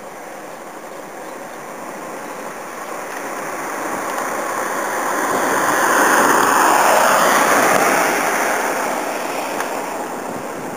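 A road vehicle passing by, its tyre and engine noise growing steadily louder, peaking about two thirds of the way through and then fading away.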